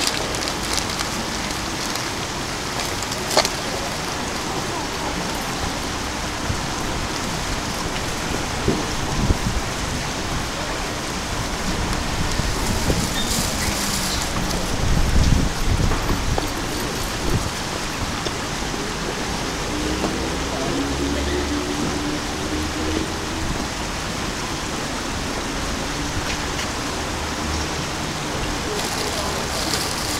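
Steady rushing of river water spilling over a low weir in a narrow concrete channel, with a brief low rumble about halfway through.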